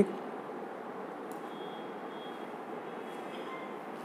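Steady low room hiss, with faint thin high tones for about a second and a half in the middle.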